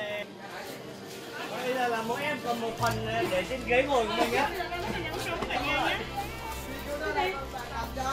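Voices chattering, mixed with background music that has a singing voice; a steady low hum enters about three seconds in.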